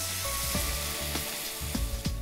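Water poured into a hot pan of frying chicken masala, hissing and sizzling loudly as it hits the hot oil and turns to steam; the hiss is strongest at first and thins toward the end.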